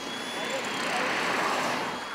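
A car passing close by on a highway: its tyre and engine noise swells to a peak about a second in, then fades away.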